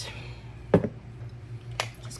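Sharp clicks and a knock as a small glass jar and a plastic cup are handled at a table: a click at the start, a louder knock about three quarters of a second in, and another click near the end.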